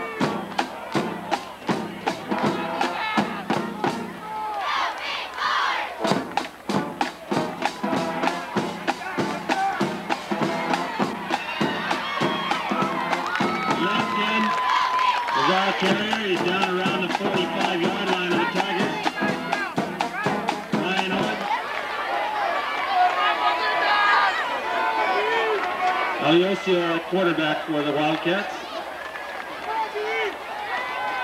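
Drum-and-horn band music with a steady drumbeat, over crowd voices and cheering.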